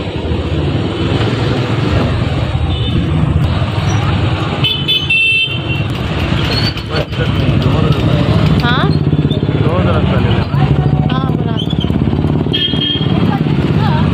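Motorised two-wheeler engine running steadily while riding through street traffic. Vehicle horns honk about five seconds in and again near the end.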